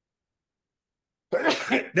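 A person sneezing once, a little after halfway through.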